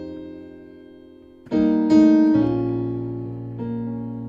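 Piano playing slow gospel-style altered chords. A held chord dies away, a new chord is struck about one and a half seconds in, with a low bass note added just after, and another chord comes in near the end.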